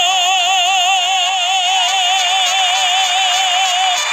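A man singing the song's final word, 'amor', held as one long high note with steady vibrato over the accompaniment, ending near the end.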